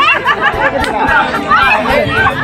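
Several voices of a long-boat crew shouting a repeated "oi, oi" paddling call, overlapping with one another and with chatter.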